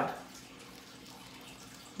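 Quiet room tone: a faint steady hiss with a low, faint hum, no distinct sounds, as the last word of speech trails off at the very start.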